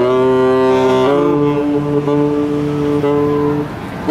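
Two saxophones playing together, holding long notes in harmony. The lower note breaks off and comes back a few times, and both fade briefly just before the end.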